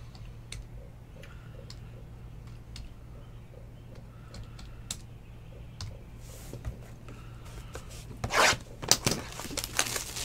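Scattered light clicks and taps over a steady low hum, then, about eight seconds in, a few loud bursts of plastic wrap being torn and crinkled as a sealed box of trading cards is opened.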